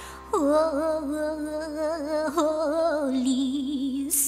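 A singer holding long, slow notes with wide vibrato over a soft instrumental accompaniment.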